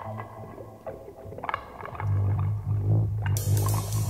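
Opening bars of a blues-rock song: picked electric guitar notes, then about two seconds in a loud sustained low bass note comes in, with bright high percussion joining near the end.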